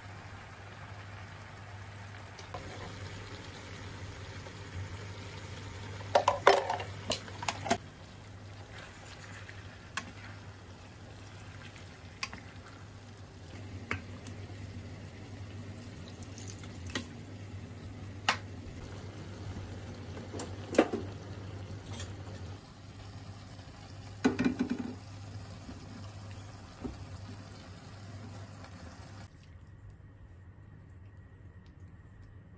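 Udon noodles and vegetables frying in a pan over a gas flame, a steady sizzle over a low hum. Wooden chopsticks clatter against the pan as the noodles are tossed, in sharp clusters about six, twenty-one and twenty-four seconds in.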